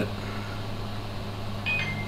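Steady low hum of background noise, with a brief faint high-pitched blip near the end.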